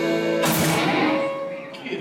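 Live band of guitars and drums holding a chord, then a last strummed and struck accent about half a second in that rings out and fades over about a second: the end of a song.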